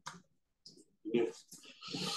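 A few faint, sharp clicks in a quiet lecture room, with a brief spoken "yeah" and a short hiss near the end.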